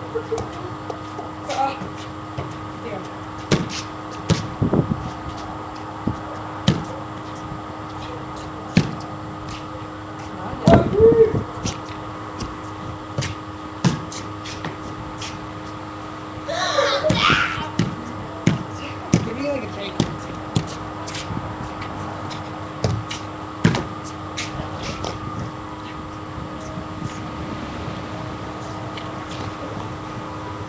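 Scattered, irregular knocks and thuds with a few brief, distant children's voices, over a steady hum.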